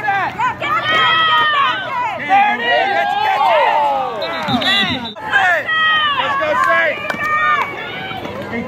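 Sideline spectators yelling and cheering during a running play, many excited voices overlapping.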